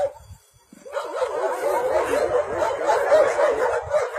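Many dogs barking and yelping together in a dense, continuous chorus, starting about a second in after a brief lull.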